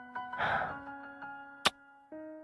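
Soft piano background music, with a breathy exhale about half a second in and a single sharp lip-smack of a kiss near the end.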